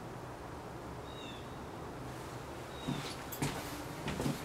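Steady low room noise with a faint, short, high chirp about a second in; near the end, a few soft knocks and taps from a paintbrush and palette being handled.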